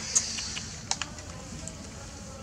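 A few light clicks and ticks as a baby macaque handles and eats corn kernels from a cob held in a hand, over faint outdoor background noise.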